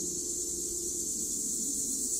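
A steady, high-pitched chorus of insects calling outdoors.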